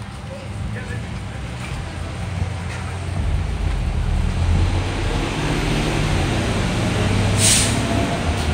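Low vehicle engine rumble that grows louder about three seconds in, with a short sharp hiss near the end.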